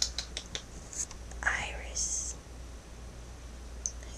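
Soft whispering or breathy voice of a person close to the microphone, with a few sharp clicks in the first half-second.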